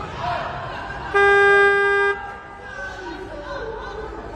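Competition timing buzzer: one steady electronic tone about a second long, the attempt clock's signal that 30 seconds remain for the lift. Crowd voices are heard around it.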